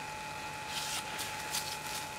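Steady recording hiss with a thin, constant electrical whine, and a few faint, brief rustles in the second half.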